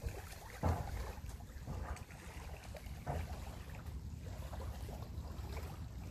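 Small waves lapping softly on a pebbly beach, with a steady low rumble of wind on the microphone.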